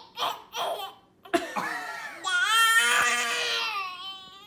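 A baby crying: a few short sobbing cries, a brief pause, then about two seconds in a long, high wail that rises and falls in pitch.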